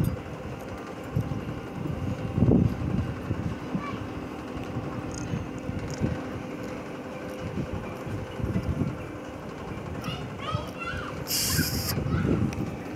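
A rotating amusement ride in motion: a steady mechanical hum with wind buffeting the microphone as it swings round, over faint voices. There is a short sharp hiss near the end.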